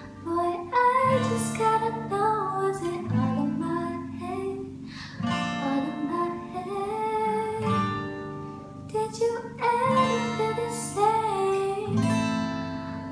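A girl singing solo, accompanying herself on a strummed acoustic guitar, with fresh chords struck every couple of seconds under the sung melody.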